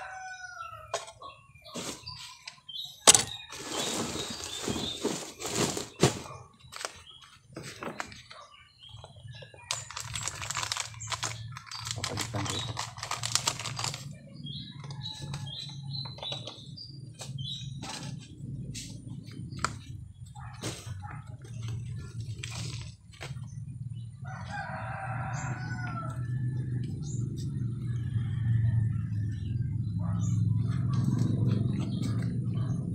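A rooster crows at the very start and again about 24 seconds in. In between come rustling, scraping and clicking as soil is handled at a sack, with two longer rustling stretches early on. A low steady hum sets in about halfway through.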